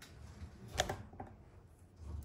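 A few faint clicks and taps of handling. The loudest comes a little under a second in, with two softer ones after it.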